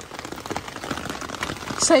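Rain pattering on an umbrella held close overhead, a dense, steady spatter of drops. A short shout comes near the end.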